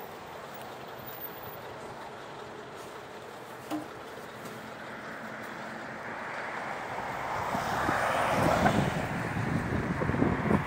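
Steady road traffic noise, then a vehicle passing close, rising to a peak over a couple of seconds and easing off, with wind buffeting the microphone near the end.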